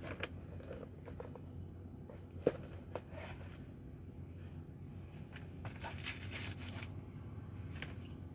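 Handling noise from a semi-rigid headset carrying case being turned over and opened by hand: light rustles and small clicks, with one sharp click about two and a half seconds in and a brief flurry of rubbing around six seconds in, over a steady low hum.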